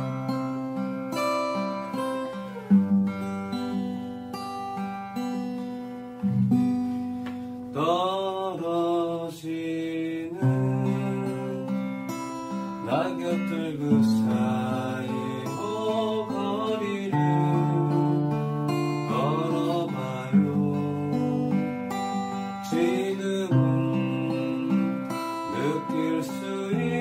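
Steel-string acoustic guitar plucked in a slow song, with bass notes under the melody. A voice sings along in places, its pitch wavering.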